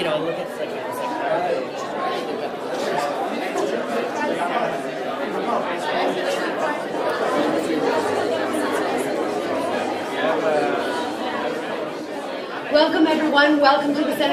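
Crowd chatter: many people talking at once in a large, echoing hall. Near the end one voice comes up louder and clearer over the hubbub.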